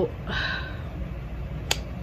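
A woman's heavy sigh, one breathy exhale just after the start, followed about a second and a half later by a single sharp click.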